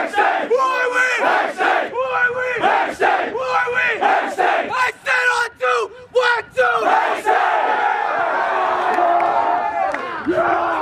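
A team of young men in a huddle chanting together, shouting in unison about twice a second, the shouts coming quicker and choppier about five seconds in. For the last three seconds the chant gives way to one long group yell.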